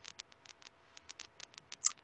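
Faint, irregular light clicks, about a dozen in quick succession, with a slightly louder one near the end.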